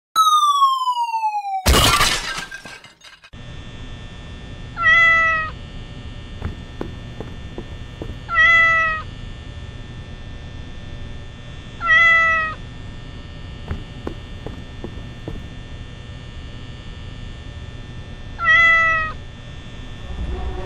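A cartoon falling whistle glides down in pitch and ends in a loud crash about two seconds in. Then, over a steady hum, a cat meows four times, each meow short and a few seconds apart.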